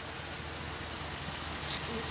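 Steady outdoor background noise: a low rumble under an even hiss, with nothing sudden in it.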